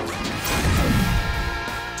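Cartoon blast sound effect of a monster truck's exhaust pipes firing up for a speed boost: a sudden rush that swells into a deep rumble about half a second to a second in. Music holds a sustained chord over it through the second half.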